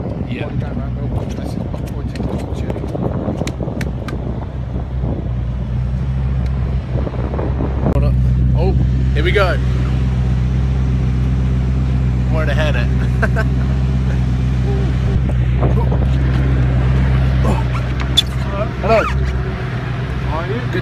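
Koenigsegg One:1's twin-turbo V8 idling steadily, a constant low hum that gets louder about eight seconds in.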